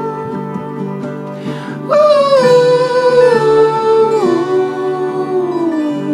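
Live acoustic music: a voice holds long wordless notes over acoustic guitar and a lap zither. There is a breath about one and a half seconds in, then a louder new note from about two seconds that slides slowly downward.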